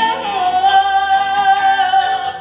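A woman singing live into a microphone, holding one long note that slips slightly lower just after the start.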